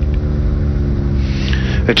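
Engine of the race camera motorcycle running at a steady pace, a constant engine drone over a low rumble.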